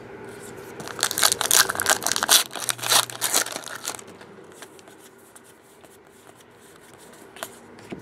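Baseball card pack wrapper being torn open and crinkled by hand: a loud spell of crackling and tearing starting about a second in and lasting some three seconds, then softer rustling as the pack is handled.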